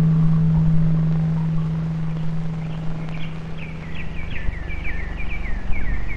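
Film soundtrack: a low, steady held note fades away over the first three seconds, then faint high chirps come in, several a second.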